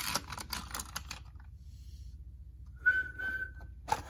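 Small plastic-and-metal clicks and rattles for about a second as a die-cast toy engine is pushed along a plastic playset track, then near the end a single steady whistled note lasting about a second, a person imitating the engine's departing whistle.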